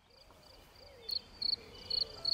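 Cricket chirping in short, evenly spaced pulses about three times a second, fading in from silence and growing louder from about a second in.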